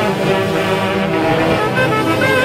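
Large Andean orquesta típica of saxophones, clarinets and violins playing a dance tune, the saxophone section holding full, sustained chords.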